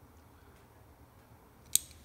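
Faint room tone, then a single sharp click of a torch lighter's ignition near the end.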